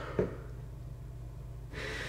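A man's short, sharp nervous breath about a quarter of a second in, then a quieter breathy inhale near the end, over a low steady room hum.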